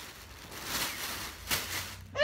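Rustling of clothes being picked up and handled, a longer swish through the middle and a short one near the end.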